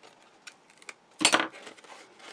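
Backing liner being peeled off a strip of double-sided tape on card: a few light paper clicks, then one short, sharp rip about a second in.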